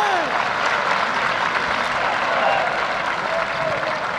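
Football crowd in the stands clapping and applauding, with shouts from the fans mixed in.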